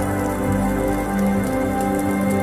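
Slow ambient meditation music of long held tones over a low drone, with a soft steady patter of rain sounds mixed in.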